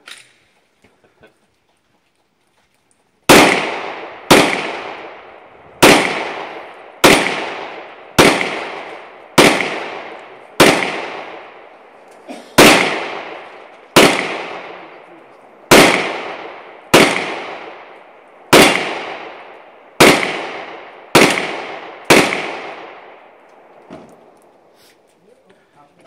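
A Glock 40 pistol in 10mm Auto fired fifteen times at a steady pace, about one shot every second and a quarter, starting about three seconds in. Each shot is loud and sharp, with a short echo trailing off after it.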